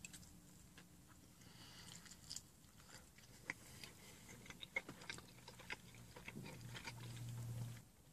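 Faint mouth sounds of a man biting into and chewing a fried, flaky cheese-filled chalupa shell, with scattered soft crunches and clicks. A low, faint hum rises near the end.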